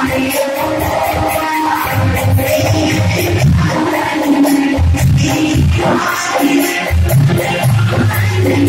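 Live music with singing, played on keyboard instruments over a recurring low beat.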